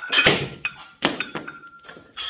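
Two heavy thuds about a second apart, each ringing on briefly in the room, with a few lighter knocks between, as a weightlifter finishes a clean and jerk with a loaded barbell.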